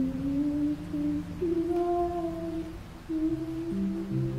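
A slow, sustained female vocal melody, drawn-out held notes with a washed, echoing reverb as if sung in a large empty hall, over soft low sustained accompaniment notes that shift near the end.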